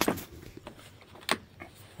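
Handling noise from a plastic bottle: a few sharp clicks and knocks, the loudest at the very start and another about a second and a half in.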